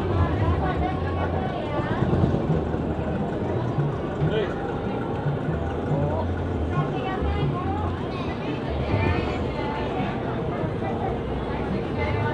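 Indistinct voices of several people talking, over an uneven low rumble.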